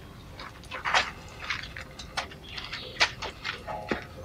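A man eating noisily from a bowl with a spoon: close chewing and mouth sounds in short, irregular bursts.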